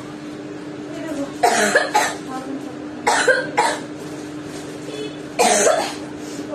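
A woman coughing about five times in short bursts, roughly in pairs, the last cough longer.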